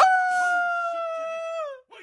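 A voice screams "Oh!" in one long, high cry held for about a second and a half, sliding down in pitch as it ends.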